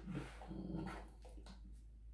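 Quiet handling of a cardboard watch box and its paper contents, with light taps and rustles. A faint, low voice-like sound comes about half a second in.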